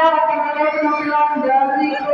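A voice through a microphone and loudspeaker in a reverberant hall, delivered in long held pitches like chanting or drawn-out announcing.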